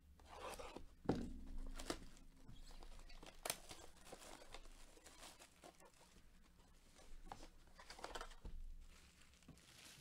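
A shrink-wrapped cardboard trading-card hobby box being handled and opened: plastic wrap crinkling and tearing, with several light knocks of the cardboard boxes against the table.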